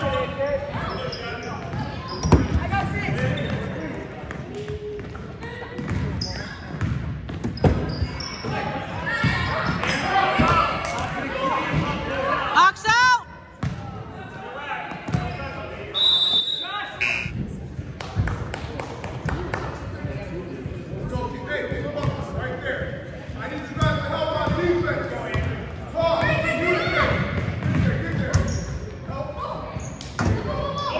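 A basketball being dribbled and bounced on a hardwood gym floor while players and spectators call out, all echoing in a large gym. A short high whistle blast sounds about halfway through.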